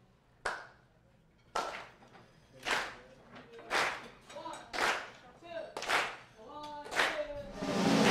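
Hand claps on a slow steady beat, about one a second, clapping along to set the groove for a jazz tune. Soft pitched music comes in under the claps about halfway through and grows louder near the end.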